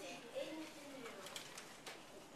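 A child's voice speaking softly with a gliding pitch, the words not made out, and one sharp click near the end.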